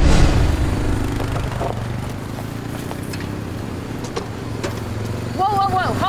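Side-by-side utility vehicle (Gator) engine running at a steady low drone, starting abruptly with the cut at the start; a short spoken voice comes in near the end.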